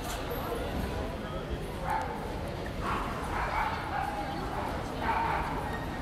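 Busy pedestrian street ambience: passersby talking, with three short high-pitched calls about two, three and five seconds in.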